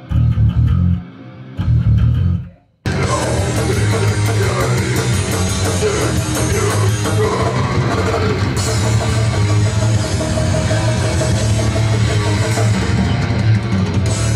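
An electric bass guitar plays alone in short low phrases with pauses between them. After a brief near-silent break about three seconds in, a full heavy metal band with drums and guitars comes in and plays on steadily.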